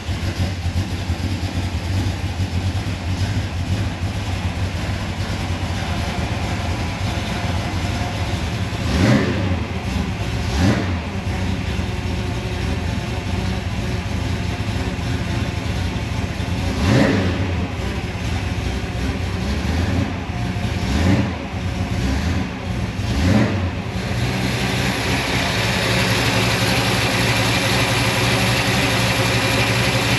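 Newly built 489 cubic-inch big-block Chevy V8 with Holley Sniper Stealth throttle-body fuel injection, running steadily in its first minutes after first fire-up. It is blipped five times, each a short rise and fall in revs. The sound grows louder and brighter over the last few seconds.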